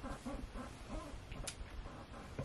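A single short spritz from a trigger spray bottle of heat protectant about one and a half seconds in.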